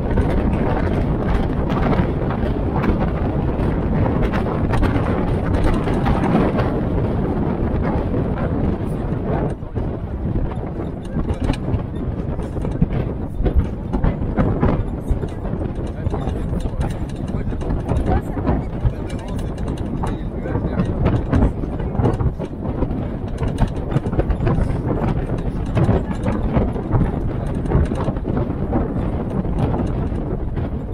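Open WWII-style military Jeep driving along a lane: engine running under load with wind and road noise, and frequent short knocks and rattles from the bodywork over the rough surface.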